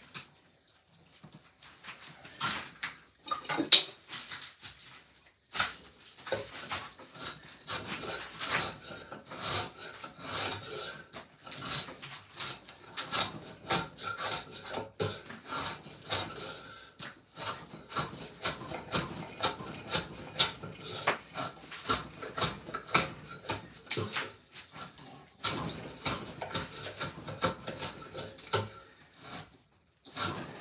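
Hand tool scraping and shaving the edge of a wooden axe-handle blank: repeated rasping strokes on wood at roughly one to two a second, sparse at first and steady from about six seconds in.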